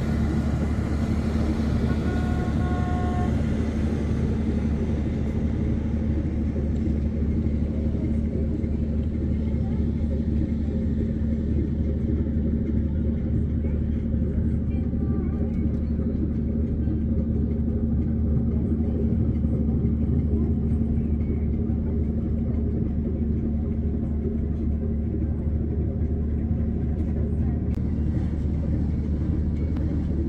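Steady low drone of a river cruise ship's engines, with a constant deep hum that neither rises nor falls.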